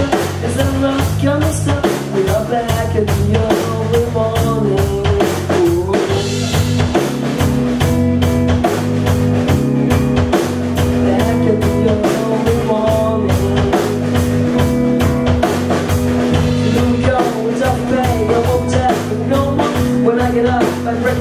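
Live rock band playing: drum kit keeping a steady beat under two electric guitars and bass guitar, with a pitched lead melody that bends up and down over the top.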